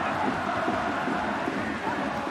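Football stadium crowd cheering after a goal: a steady din of many voices.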